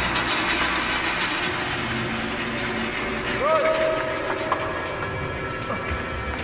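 Film sound effects of dense cracking and creaking, like timber splitting under strain, over a low rumble, with a short wavering tone a little past halfway.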